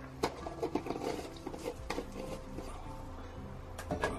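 Stick blender worked through thick soap batter in a plastic bowl: a low steady hum with scattered light clicks and knocks of the blender against the bowl.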